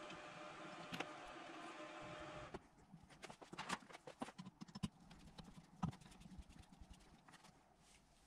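Faint, scattered light clicks and knocks of an aluminium alternator housing being handled and a small plastic Loctite bottle set down on a cardboard-covered workbench, over a low steady hiss that drops away about two and a half seconds in.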